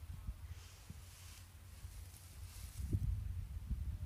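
Quiet outdoor background: a steady low wind rumble on the microphone with faint rustling, and a few soft handling bumps near the end.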